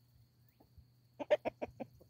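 Chickens clucking: after a quiet first second, a quick run of about six short clucks over half a second.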